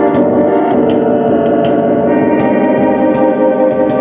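Live band music, loud and continuous: sustained layered chords over a regular beat of sharp percussion hits.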